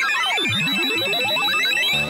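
Electronic synthesized sound effect: a steady high beeping tone over a tangle of gliding tones sweeping up and down, one diving low about half a second in. Music with stepped synth notes starts at the very end.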